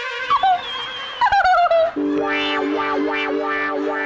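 Comic background music. Two sliding, wobbling notes fall in the first two seconds, then a held chord comes in with bright repeated notes about two or three times a second.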